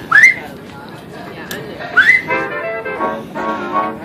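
A person whistling: two short whistles, each sliding quickly upward, about two seconds apart, over faint steady tones in the background.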